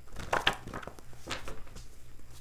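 Tarot cards being handled off camera: a few short sharp card flicks and rustles, the loudest about half a second in.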